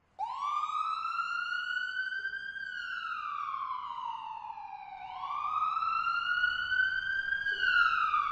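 Emergency-vehicle siren on a slow wail, its pitch rising and falling twice, each sweep taking about five seconds.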